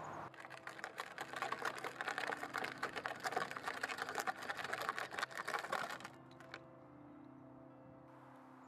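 Plastic wheels of a child's ride-on toy buggy crunching over gravel: a dense run of rapid, irregular clicks and crackles that stops about six seconds in.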